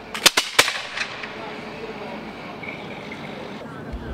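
A ragged volley of flintlock muskets: three sharp reports in quick succession within about half a second, then a weaker fourth shot about a second in, each trailing off in a short echo.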